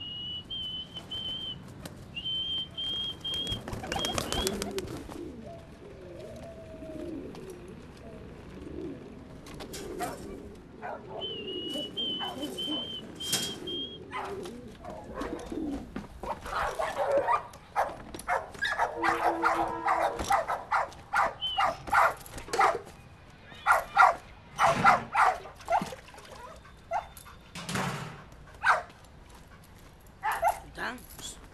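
Pigeons cooing, with a high steady whistling tone twice in the first half; from about halfway on, a dog barks and yips in many short sharp calls, loudest near the end.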